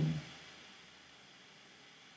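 A man's speaking voice trails off at the very start, then near silence: only faint room hiss.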